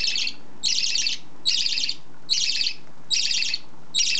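Budgerigar chirping in short, scratchy bursts repeated evenly at a little over one a second.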